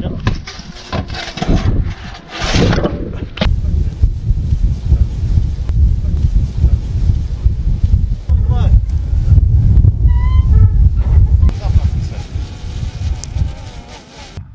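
Outdoor field recording dominated by wind buffeting the microphone, a loud low rumble. Men's voices call out in the first few seconds and again around two-thirds of the way through. There is a single sharp knock about three and a half seconds in.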